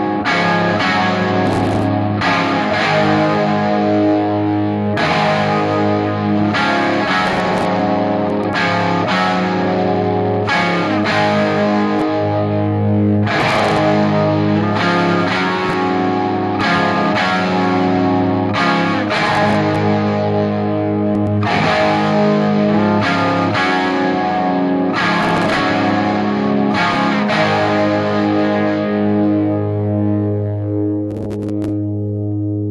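Two layered electric guitar tracks played through a Peavey Classic 30 tube combo amp's clean channel, Normal volume at 12 o'clock, playing rock chord riffs with short stops between the chords.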